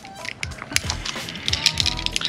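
Background music with scattered light metallic clicks and clinks from Petzl Micro Traxion progress-capture pulleys and locking carabiners being handled.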